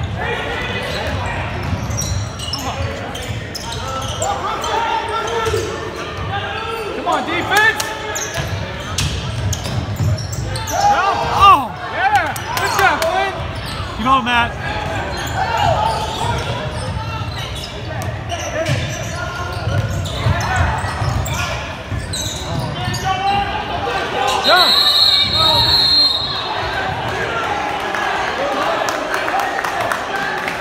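Basketball game in a gym that echoes: the ball bouncing on the hardwood court amid shouting spectators and players, with a referee's whistle blown for about a second and a half near 25 seconds in.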